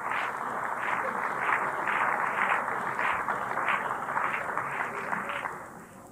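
Audience applause filling the pause in a live speech, with swelling claps about three times a second, dying away near the end.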